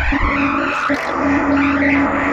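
Stoner rock recording: a sustained low note held under sweeping noise that rises and falls in pitch.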